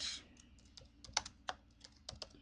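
Computer keyboard typing: several quiet, separate keystrokes at an uneven pace, mostly in the second half, as a short word is typed.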